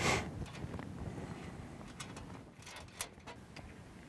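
Faint handling sounds of fingers working fishing line into a knot: a short rustle at the start, then a few light scattered clicks and ticks, the sharpest about three seconds in.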